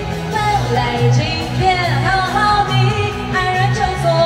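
A woman singing into a microphone over amplified backing music, her voice gliding between held notes.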